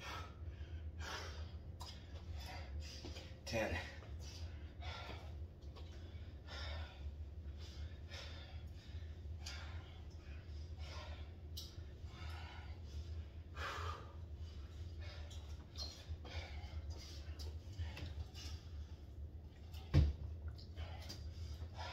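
Heavy, rapid breathing of a man exerting himself through burpees, with hard breaths coming about one to two a second.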